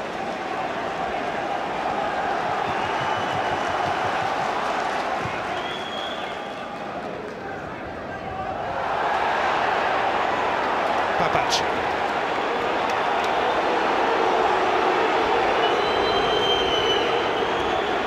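Football stadium crowd: a steady din of fans' shouting and chanting that swells louder about halfway through.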